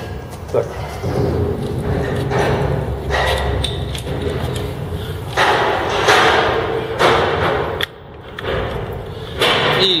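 Scraping, rustling and knocking of hand work at a motorcycle engine as a spark plug socket wrench is fitted onto a spark plug, in several noisy stretches with thuds, over a low steady rumble.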